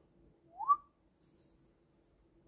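A single short whistled note, less than a second long, that glides upward in pitch and briefly holds at the top.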